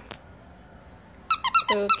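Plush dog squeaky toy squeezed by hand: a quick run of short high squeaks from its squeaker about a second and a half in.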